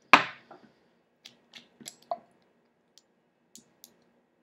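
Small objects handled on a wooden tabletop: one sharp knock just after the start, then a scatter of light clicks and ticks as the dropper cap of a glass e-liquid bottle is worked loose, one tick ringing briefly about two seconds in.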